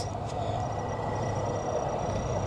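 Steady background noise with a low hum and a faint high thin tone, no distinct events.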